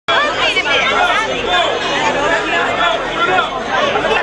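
Loud crowd chatter: many voices talking over one another at once, with no single voice standing out.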